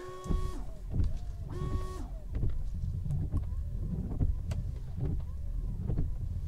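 Tesla Model 3 windshield wipers running on new standard blades: a steady low wiper-motor hum with the blades sweeping across the glass, gliding on it rather than rubbing. A short whine sounds at the start and again about a second and a half in.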